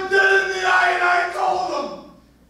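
A man's voice holding a loud, high, wordless cry on one steady pitch, in a few long stretches, falling in pitch and fading near the end.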